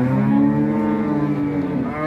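A cow mooing: one long, low moo lasting about two seconds.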